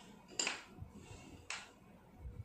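Metal spoon clinking and scraping against a glass bowl as a peanut chaat mixture is stirred: two short strokes about a second apart.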